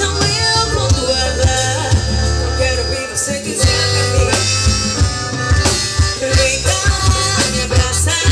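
Live forró band playing: a woman singing over piano accordion, electric bass, electric guitar and drum kit, with a heavy, steady bass line and a regular drum beat.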